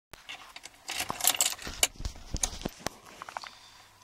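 Bunch of car keys jangling and clicking in irregular bursts as the ignition key is put in and turned, switching on the dashboard.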